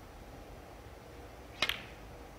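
A single sharp click of a snooker shot being played, with the cue ball struck close to the green ball, against a quiet arena hush.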